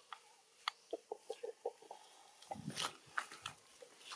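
A quick run of about six short pitched animal calls about a second in, followed by rustling and crackling of dry leaf litter with soft thuds.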